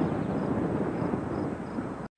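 Steady outdoor background noise from the course, a wash of low rumble with no voices, and a few faint high chirps.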